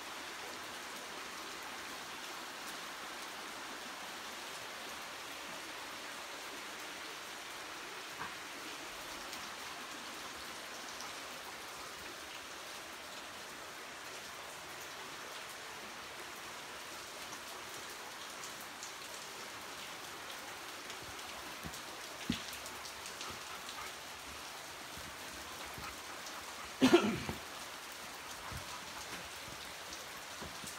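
Steady rush of a creek flowing over rocks. A few sharp knocks cut through it, the loudest cluster near the end.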